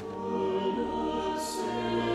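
Choral music: a choir singing slow, sustained chords.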